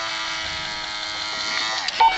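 Small electric gear motor of a Fisher-Price Magic Touch N Crawl Winnie the Pooh toy running with a steady buzz, its pitch dropping as it slows near the end.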